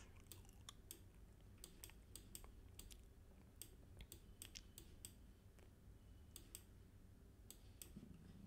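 Faint computer mouse clicks, irregular and some in quick pairs, over near silence.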